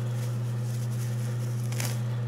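A steady low hum, with a short rustle near the end.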